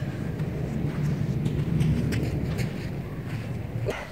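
Low rumbling outdoor background noise that swells a little in the middle and fades again, with a few faint clicks.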